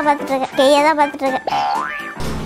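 Cartoon-style comedy sound effects: two loud, wobbling boing-like tones, then a quick rising whistle near the end.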